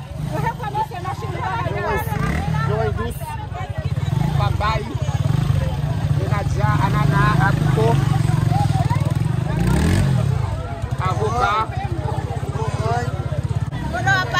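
A motorcycle engine running close by, its pitch rising and falling a few times as it is revved, with market voices chattering around it.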